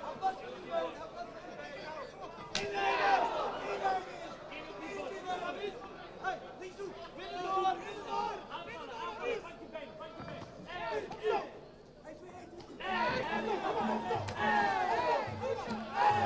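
Voices chattering and calling over a kickboxing bout, with a single sharp click about two and a half seconds in. About thirteen seconds in, music with a steady beat comes in and the sound grows louder.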